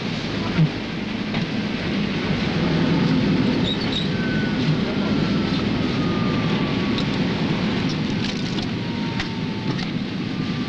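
Steady rushing whirr of a computer room's magnetic tape drive and machinery, with a faint whine that slowly falls in pitch.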